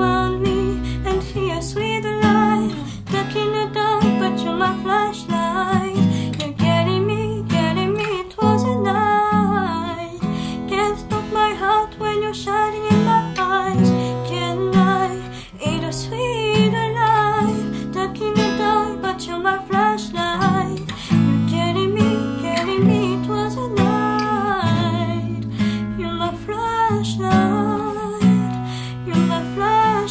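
A woman singing a pop ballad, accompanied by a strummed and picked acoustic guitar.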